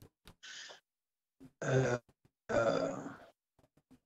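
Broken fragments of a man's voice over a poor remote video link: a short breathy hiss, then two brief voiced sounds about a second apart, with no words that can be made out. The link is bad enough that he is heard only with difficulty.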